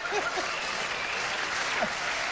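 Studio audience applauding, a steady wash of clapping, with a few short laughs or cries over it near the start and again near the end.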